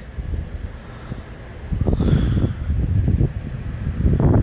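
Wind buffeting the phone's microphone: a low, uneven rumble that gusts louder about halfway through.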